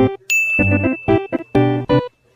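A bright bell-like 'ding' sound effect strikes about a third of a second in and rings on for about a second, over keyboard-style intro music made of short, repeated chords.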